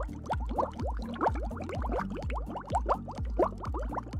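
Underwater bubbling: a rapid, irregular stream of short rising plops and gurgles over a low steady hum.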